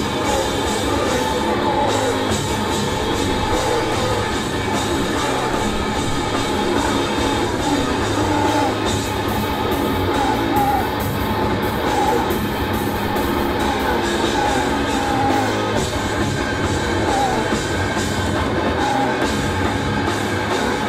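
Live heavy metal band playing loud and without a break: electric guitar and drums, with a singer shouting into a handheld microphone.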